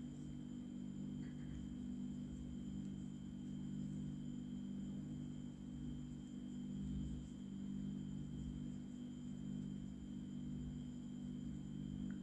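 Steady low background hum with a faint, thin high whine, unchanging throughout; the crochet hook and yarn make almost no sound, only a couple of tiny faint ticks.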